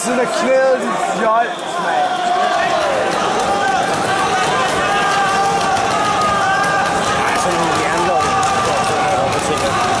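Crowd of spectators shouting and calling out over one another, a loud, steady din of overlapping voices with some long held shouts.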